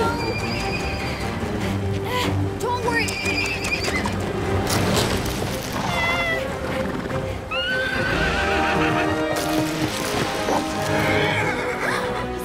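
A horse whinnying several times, in wavering high calls, over background music.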